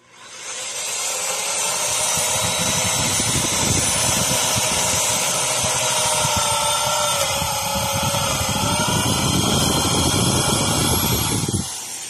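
Electric hand drill with a long twist bit boring a leg hole through a wooden stool seat, running steadily with a motor whine. The whine sags a little in pitch partway through as the bit bites, then recovers, and the drill stops just before the end.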